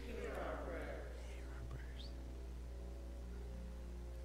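A congregation's faint, murmured spoken response in the first second and a half, over soft sustained background chords and a steady electrical hum.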